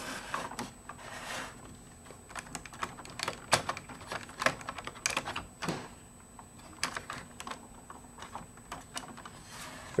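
Small, irregular clicks and taps as fingers handle and move the hinged calf armour panels of a collectible Iron Man action figure.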